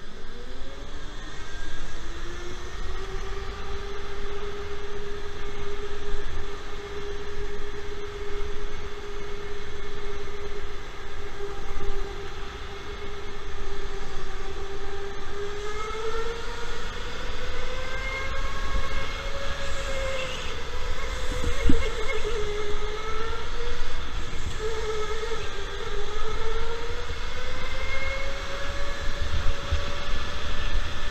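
Electric go-kart motor whining as the kart drives. The pitch rises as it accelerates over the first couple of seconds, then holds and wavers with speed through the corners, over a low rumble. A single sharp knock comes a little past twenty seconds in.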